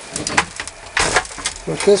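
Plastic bucket being handled: a few sharp knocks, then a short rattling rush of noise about a second in, as the emptied, hole-drilled top bucket of a homemade spinning bucket classifier is lifted and set back.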